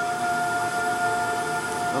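A steady high whine at one unchanging pitch over a background hiss.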